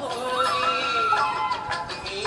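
Indian classical devotional song in Raga Yaman Kalyani playing: a melodic line that holds and slides between notes, with a few percussive strokes near the end.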